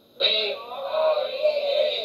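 A man's voice chanting in a long, held, sung tone into a microphone, starting just after a brief silence, heard through a television's speaker.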